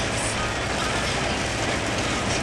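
Torrential rain beating steadily on the roof and windshield of an Isuzu Crosswind, heard from inside the cabin over the low rumble of the vehicle.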